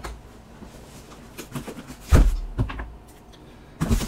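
A cardboard shipping box being handled and set on a workbench: a loud thump about two seconds in with lighter knocks and rustles around it, and another sharp thump near the end.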